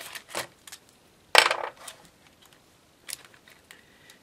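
Plastic packet and acrylic rhinestone sheet being handled and put down on a craft mat: a few light clicks and one louder, brief plastic clatter about a second and a half in.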